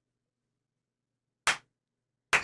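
Near silence, then one short, sharp smack about a second and a half in.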